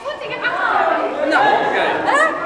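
Several people's voices chattering at once in a large hall, with no clear words.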